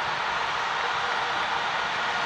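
Football stadium crowd cheering a goal, a steady roar with no breaks.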